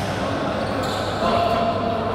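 A basketball bouncing on an indoor court floor, with a sharp thud at the start and another a little under a second later.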